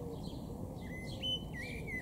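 Songbirds calling: scattered short high chirps throughout, and in the second half a run of clear whistled notes that step between two pitches.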